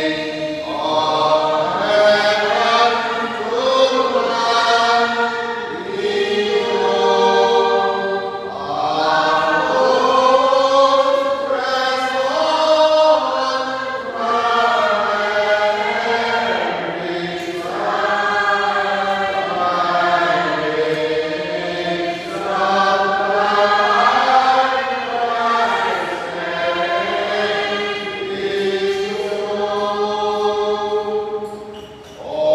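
A church congregation and choir singing a slow hymn together, in sustained phrases of about two to three seconds each.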